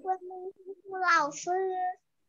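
A child's high voice chanting in a sing-song way, as if counting along: a few short notes, a brief pause, then a longer phrase about a second in.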